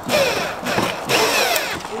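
Power drill driving self-tapping screws into the sheet metal of a car's trunk lid: two short runs, the motor's whine shifting in pitch as it loads.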